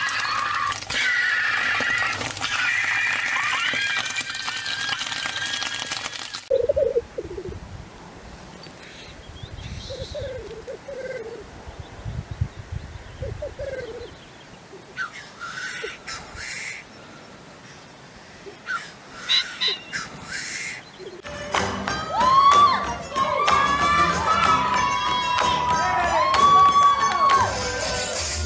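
Slices of sausage sizzling in a hot frying pan. From about six seconds in, a displaying male black grouse: short low bubbling coos, and later a few sharp hissing calls. Music with several instruments takes over about five seconds before the end.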